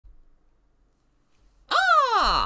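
Near silence, then about 1.7 seconds in a man's loud, high-pitched whoop that rises briefly and slides down in pitch.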